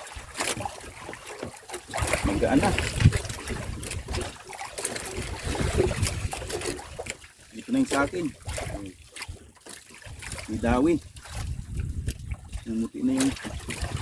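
Sea water lapping and splashing against a small outrigger boat, with a man's voice talking and laughing over it; he laughs near the end.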